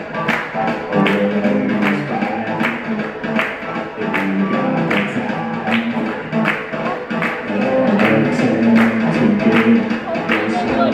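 Live band playing a song: a woman singing into a microphone over electric guitar, bass guitar, keyboards and drums, with a steady beat of about two drum hits a second.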